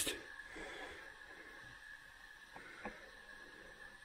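Near-quiet cave air: a faint steady hiss with a thin high whine, broken by two soft clicks a little past the middle.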